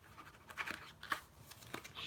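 Pen scratching on a trading card in several short strokes, going over a signature with a pen that is barely writing.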